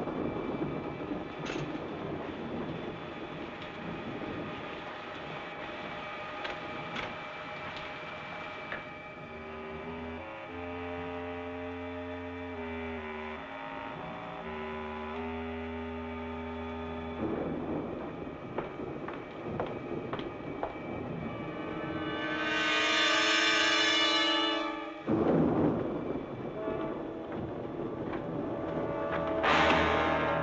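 Old film score with held orchestral chords, with a loud, bright sustained chord about two-thirds of the way through, mixed with the noise of a storm.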